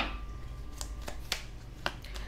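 Stiff paper index cards on a ring being flipped by hand: three sharp clicks about half a second apart.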